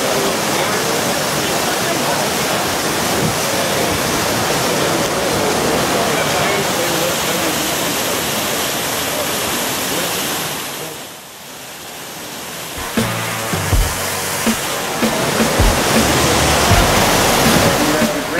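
A loud, steady rushing noise with indistinct voices beneath it. It fades out about eleven seconds in, and a couple of seconds later music with a bass beat comes in.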